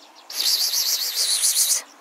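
A grassland insect, a grasshopper or cricket, stridulating: a high, rapidly pulsing buzz lasting about a second and a half that starts and stops abruptly.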